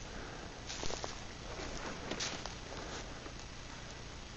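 A few footsteps on dry forest litter of leaves and twigs, with a steady background hiss.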